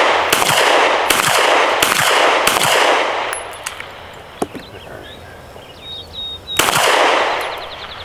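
FN 509 9mm pistol firing 115-grain ammunition without the suppressor fitted, for an unsuppressed baseline. Four loud shots come about three-quarters of a second apart, each with a long echo, then a fifth shot about six and a half seconds in.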